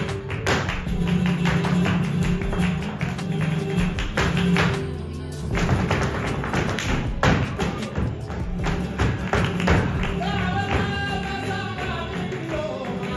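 Live flamenco: a dancer's heel-and-toe footwork stamping on a wooden stage and rhythmic hand-clapping over guitar, with a singer's voice joining near the end.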